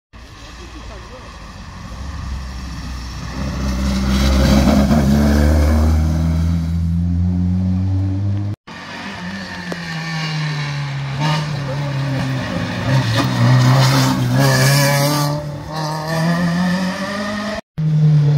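Historic rally car engine approaching at full throttle, growing louder and revving up and down through gear changes; the sound breaks off abruptly twice where the footage is cut.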